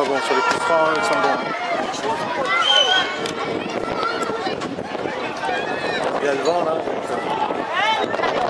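Many overlapping voices of spectators and young players at a youth football match: shouting, calling and chatter, with no single voice standing out.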